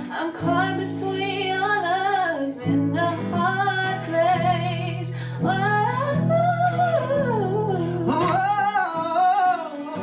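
A woman and a man singing a song together over a strummed acoustic guitar, the voices holding long notes that slide up and down in pitch.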